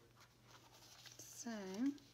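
Faint rustle of paper and cotton lace being handled, then a drawn-out spoken "So" near the end.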